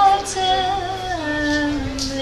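Woman singing a long held note with a slight waver over her acoustic guitar, the melody stepping down to a lower held note a little past halfway.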